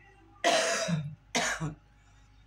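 A woman coughing twice, two short harsh coughs a little under a second apart.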